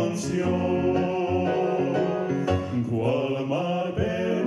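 Male gospel quartet singing in close harmony through microphones, a song in a foreign language, moving through a series of held chords.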